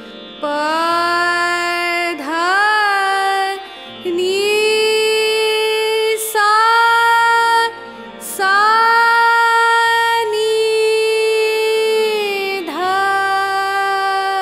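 A voice sings the Bilawal thaat (all shuddha swaras) in sargam, one held note after another of about one to two seconds each, rising to the upper Sa and turning back down. A low drone-like accompaniment sounds beneath it.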